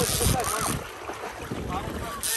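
Wind buffeting the microphone in a gust during the first second, then easing, with faint voices underneath.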